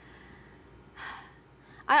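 A woman's short audible intake of breath about a second in, before she begins to speak at the very end.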